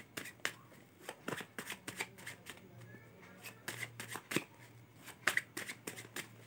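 A deck of tarot cards being shuffled by hand, overhand: an irregular run of crisp card slaps and flicks, several a second.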